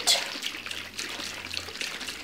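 Water sloshing inside a closed plastic shaker cup as it is shaken, mixing a powdered energy drink into the water.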